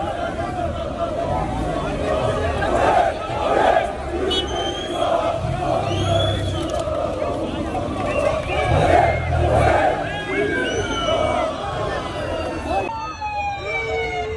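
Large crowd of football supporters chanting and shouting together, a dense wall of many voices. Short shrill sliding tones cut in over the crowd now and then.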